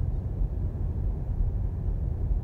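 Steady low road and tyre rumble heard inside the cabin of a Tesla Model S 85D electric car cruising at 60 mph.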